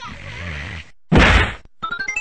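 Edited cartoon sound effects: a noisy hiss-like burst, then a loud whack about a second in, and a quick rising run of electronic beeps starting just before the end.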